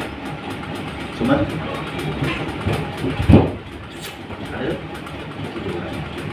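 A steady low rumble of background noise with faint, brief voices, and one dull thump a little past the middle.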